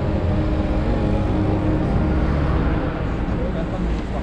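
Steady road traffic noise with indistinct voices mixed in.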